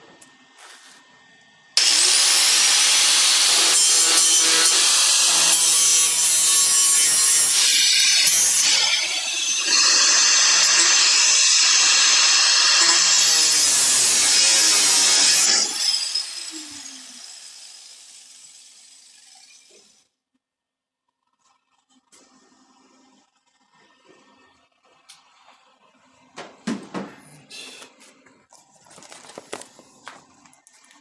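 Electric angle grinder spinning up with a rising whine and running against the steel of a car's quarter-panel seam for about fourteen seconds, easing off briefly about halfway through, then winding down and fading out. A few faint knocks follow near the end.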